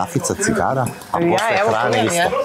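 Ceramic plates and cutlery clinking as dishes are handled, a few clinks near the start, with people talking loudly over it.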